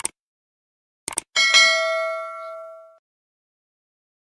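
Subscribe-button animation sound effect: quick mouse-style clicks about a second in, then a bell ding that rings out and fades over about a second and a half.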